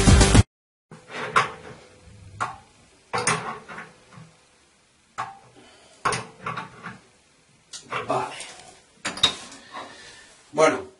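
Brass plumbing fittings clinking and knocking as they are handled and threaded onto a water heater's pipe connections, in scattered knocks every second or so. Background music cuts off just after the start.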